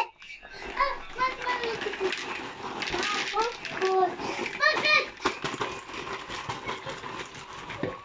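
Crackling of a brown paper bag of microwave popcorn being shaken out into a plastic bowl, with children's voices and exclamations over it.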